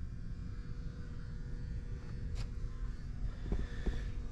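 Low, steady background rumble of a large indoor room, with a faint hum and a few faint clicks, one about halfway through and two near the end.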